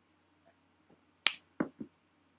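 A person taking a drink: quiet at first, then a sharp click about a second and a quarter in, followed by two short, duller knocks in quick succession, from the drink being swallowed and the drinking vessel handled.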